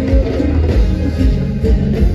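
Live cumbia band playing with a steady beat, prominent bass and pitched instrument lines.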